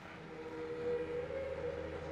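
Quiet low rumble inside a moving car, with a faint held tone that rises slightly in pitch early on and then holds steady.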